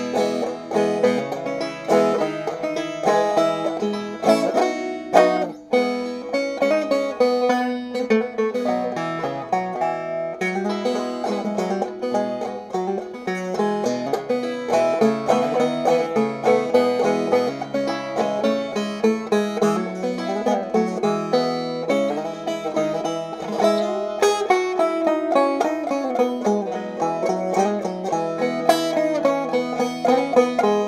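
1980s Deering Folk Era longneck 5-string banjo with a flathead tonering, picked in a continuous run of quick plucked notes, with a brief drop-off about five seconds in.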